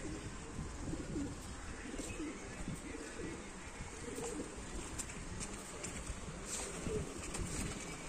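Pigeons cooing faintly over a steady outdoor background hiss.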